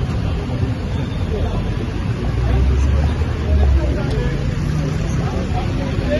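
A vehicle engine running close by, a low rumble that swells louder for about a second and a half midway, over the chatter of a crowd of people.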